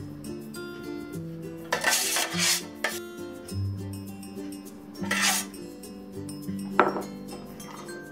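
A slotted serving spoon scraping sticky rice off a stainless steel sheet pan into a glass baking dish: a scrape about two seconds in, another about five seconds in, and a sharp clink of utensil on pan or glass near the end, over background music.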